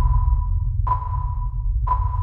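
Electronic sonar-like pings, three about a second apart at one pitch, each fading out over most of a second, over a steady low bass drone.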